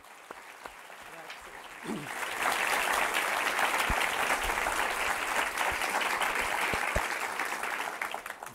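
An audience of many people applauding. After a nearly quiet start, the clapping sets in about two seconds in and keeps going steadily.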